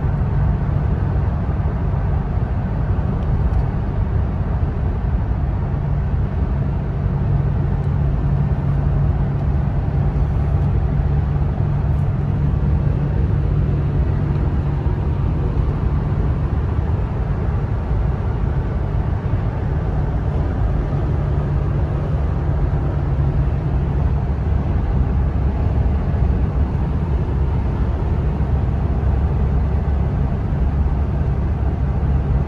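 Steady in-cabin drone of a 2004 Toyota Tacoma PreRunner's 2.7-litre four-cylinder engine cruising at about 60 mph, near 2,000 rpm, with road and tyre noise.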